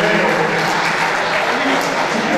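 Audience applauding, with voices over it.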